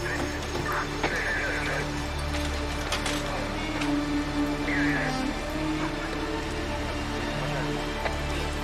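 Dramatic background music with long held low notes that slowly change pitch, with short high cries or shouts from the commotion about a second in and again near five seconds.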